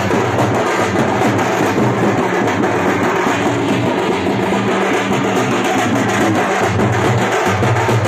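Double-headed drums slung from the shoulder, beaten with sticks in a fast, continuous rhythm.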